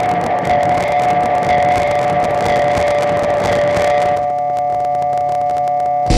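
Electronic drone from a modular synthesizer: two steady held tones close in pitch over a crackling noise texture. About four seconds in the noise thins, leaving the tones and a fast ticking pulse.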